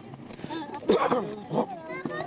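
High-pitched children's voices calling out and chattering, loudest about a second in.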